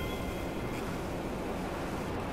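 Production-logo sound effect: a steady, windy noise wash, with faint ringing tones fading out in the first second.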